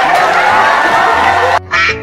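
Background music, then a short cartoon duck-quack sound effect near the end after a sudden brief break in the sound.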